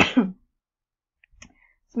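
A woman's single short cough, from a lingering cough that keeps interrupting her talking, followed by a few faint clicks about a second and a half in.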